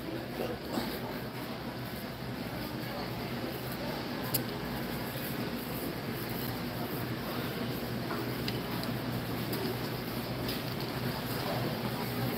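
Shopping cart rolling over a concrete store floor amid a steady low hum of warehouse-store background noise, with one sharp click about four seconds in.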